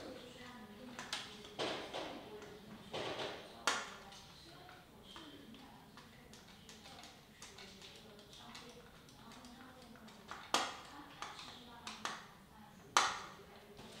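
Hand assembly of a 3D-printed servo mechanism: small servo-horn screws driven into the servos' nylon gears and plastic parts handled on a cutting mat. Faint rubbing with scattered sharp clicks and knocks, two louder knocks near the end.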